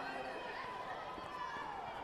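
Indistinct voices of people around the mat talking and calling out, one call falling in pitch near the end.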